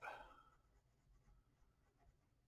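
Near silence, with faint scratching of a pen on drawing paper as lines are thickened; the faint sound fades within the first half second.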